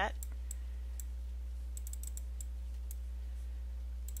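Light computer mouse clicks, a few single ones early and a quick cluster in the middle, over a steady low electrical hum.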